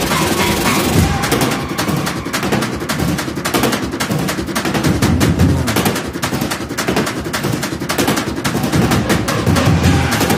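A string of firecrackers bursting in a fast, dense, unbroken crackle that starts about a second in, with music underneath.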